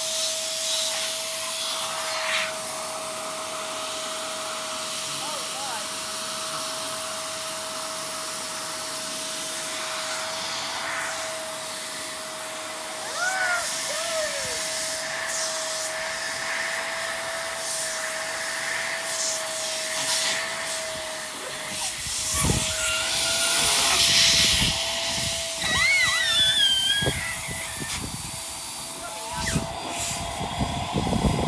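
Small electric balloon pump running steadily with a constant whine and hiss of air as it inflates a giant latex balloon. Low rumbling bursts come in over the last third.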